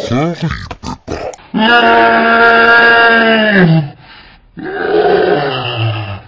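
Slowed-down cartoon pig voice. After a second of broken, dragged-out vocal sounds comes a long, steady-pitched held vocal sound of about two seconds that sinks in pitch as it ends, then a rough, drawn-out grunt.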